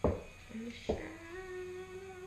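Two light knocks about a second apart, followed by a long steady pitched sound held for well over a second.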